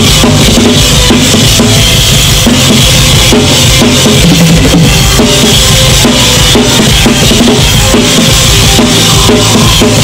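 A Yamaha drum kit with a brass snare and Zultan cymbals played hard and fast in a live metal song, the kick and snare driving under the rest of the band. It is loud and dense throughout.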